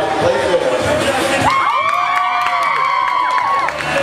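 Crowd of students cheering, with crowd chatter at first and then many long, overlapping whoops and shouts from about a second and a half in.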